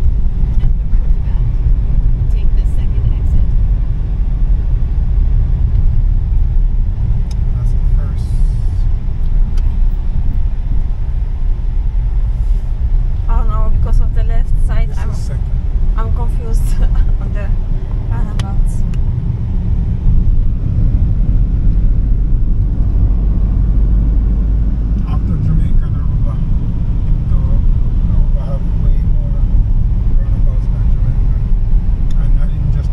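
Steady low rumble of a car's engine and tyres on the road, heard from inside the cabin while driving. Faint voices come through in the middle and near the end.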